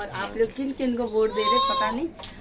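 People talking, then a high, drawn-out voice, likely the toddler's, from about one second in to near the end.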